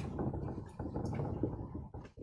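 Dry-erase marker writing on a whiteboard: a few faint, short scratchy strokes over a low, steady room hum.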